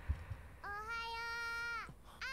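A young child's voice from the anime soundtrack calls out one long, drawn-out "Morning!", held on a single pitch for over a second.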